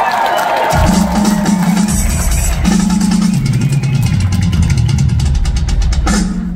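Live rock drum solo on a full drum kit: rapid rolls that step down in pitch across the toms, with cymbals over them.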